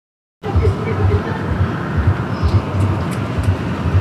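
Silence for the first half-second, then steady outdoor background noise with an uneven low rumble and hiss.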